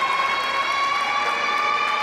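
A long, steady horn-like tone with strong overtones, held for a few seconds and rising slightly in pitch toward its end.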